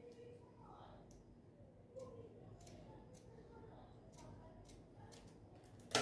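Scissors cutting through a cotton fabric strip: a few faint, scattered snips and clicks of the blades.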